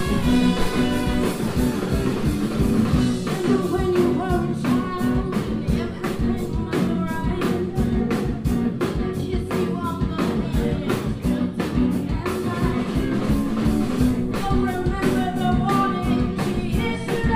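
Ska-punk band playing live: a horn section of trumpets, trombone and saxophone over electric guitar and a drum kit keeping a steady beat.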